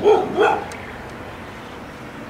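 A dog barking twice in quick succession, two short barks about half a second apart, right at the start.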